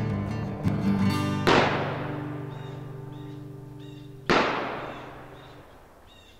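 Acoustic-guitar music ringing out and ending, with two loud shotgun blasts about three seconds apart, each trailing off in a long echo.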